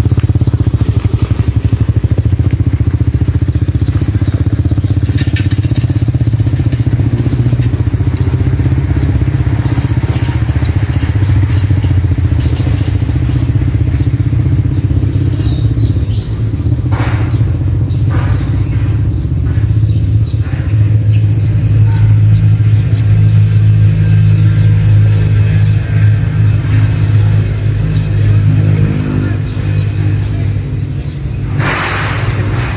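Motorcycle engine of a sidecar tricycle running steadily, a low drone that grows louder in the second half. A few short knocks a little past the middle.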